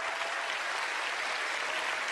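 Studio audience applauding, even and sustained.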